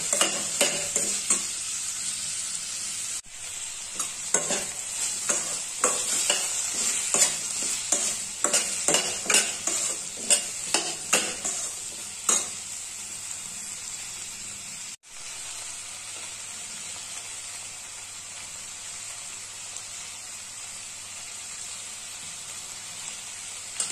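Sliced onions, tomatoes and cashews sizzling in oil in a stainless steel kadai, while a steel spoon stirs and clinks against the pan in quick, irregular knocks. After about twelve seconds the stirring stops and only the steady sizzle remains.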